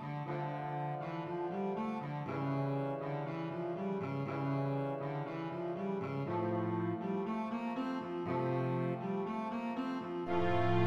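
Cello playing a melodic line from a cello concerto, its bowed notes changing about every half second to a second.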